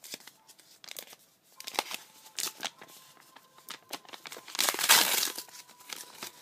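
Crinkling and rustling of a homemade white-paper booster pack being handled, in scattered crackles, with a louder, longer rustle of paper about five seconds in.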